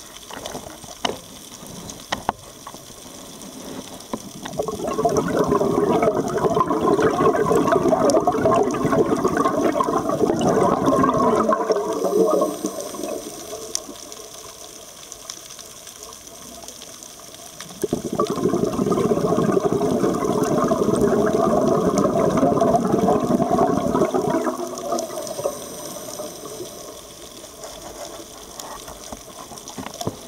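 Scuba diver's exhaled breath bubbling out of an open-circuit regulator, heard underwater: two long rushes of bubbles of about seven seconds each, with quieter inhalation stretches between them and a few light clicks near the start.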